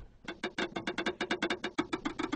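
Korg SV-1 stage piano playing its clavinet key-noise samples (RX noises) on their own, with the instrument's tone silenced: a quick, even run of sharp key clicks, about eight a second, each with a short low pitched thud, starting about a quarter second in.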